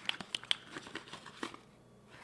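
Light crinkling and a scatter of small sharp clicks as a cosmetic product's packaging is handled and opened, stopping about a second and a half in.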